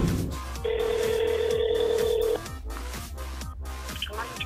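A telephone ringback tone heard down the line by the caller: one steady tone of a little under two seconds, starting about half a second in, over background music with a beat.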